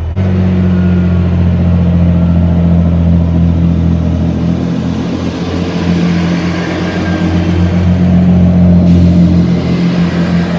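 Diesel multiple unit's underfloor engines opening up as the train pulls away from a stand. The deep engine note steps up just after the start and holds loud, with wheel and rail noise building through the second half.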